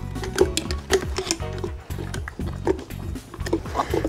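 Background music with scattered short clicks and knocks over it.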